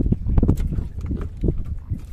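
Irregular dull knocks and thuds on a small wooden boat, over a low rumble.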